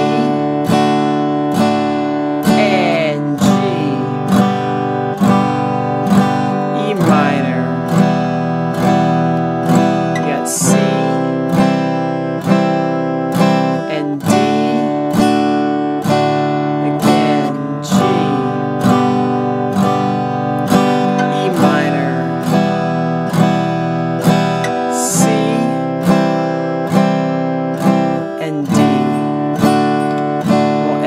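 Acoustic guitar strumming a four-chord beginner progression, about two even strums a second, changing chord every few seconds without breaks.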